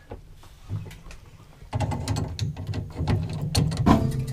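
Rapid ratchety clicking and rattling of a water heater's plumbing valve being turned by hand. It starts a little under two seconds in, over a low steady hum.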